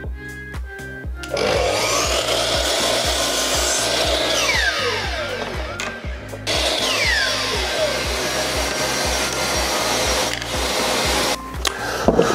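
Makita LS1219L sliding compound miter saw making two cuts through multiplex plywood, each run starting suddenly and lasting about five seconds with a falling whine, over background music with a steady beat.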